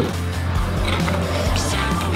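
Background music with a steady, deep bass line.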